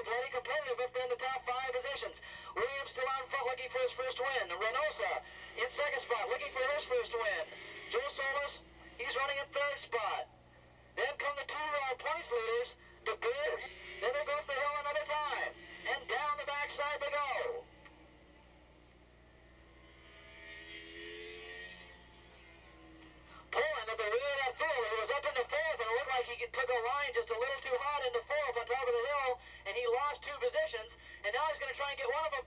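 A race commentator talking over a loudspeaker, his voice thin with little bass. There is a lull about two-thirds of the way through before the talk resumes.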